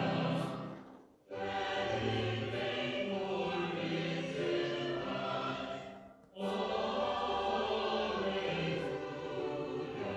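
A virtual choir singing an Easter hymn, sung phrases ending on 'Alleluia'. The singing breaks off briefly twice, about a second in and about six seconds in.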